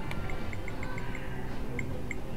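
Video poker machine beeping as a new hand is dealt: a quick run of short, high electronic blips, then a louder blip near the end, over a steady casino background din.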